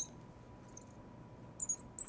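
Marker tip squeaking faintly on a glass lightboard as a word is written: a few short high squeaks, one at the start and a cluster near the end.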